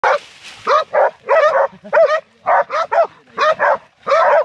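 Puppies barking at a hog, a rapid run of short barks, about three a second. It is the baying of hog dogs being trained.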